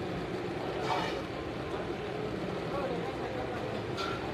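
Chicken pieces bubbling and sizzling in oil and cooking water in an iron karahi over a high gas flame, a steady noise as the water cooks down into the oil.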